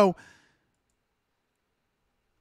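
A man's voice trailing off at the end of a word in the first moment, then dead silence.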